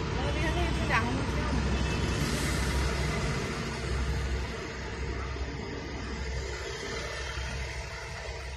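Military light armoured vehicles driving past in a convoy: a steady low engine and road rumble that falls off after about four and a half seconds.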